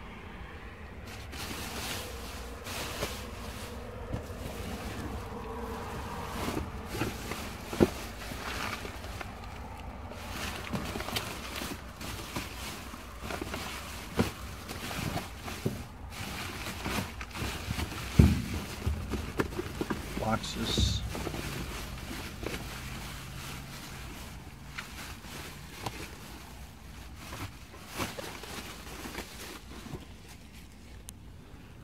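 Plastic garbage bags rustling and crinkling as hands rummage through them, with papers shuffling and scattered sharp knocks; the loudest knock comes about eighteen seconds in.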